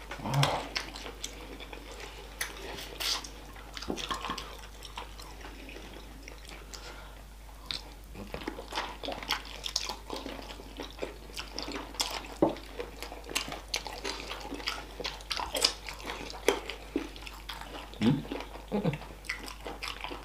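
Close-up eating sounds of two people chewing and biting spicy chicken feet in sauce, a steady run of short wet clicks and smacks, easing off for a couple of seconds in the middle.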